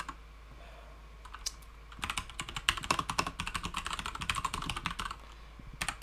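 Typing on a computer keyboard: a few scattered keystrokes, a pause of about two seconds, then a quick run of keystrokes lasting about three seconds.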